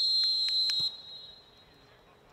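Referee's whistle: one long, steady blast that cuts off suddenly about a second in.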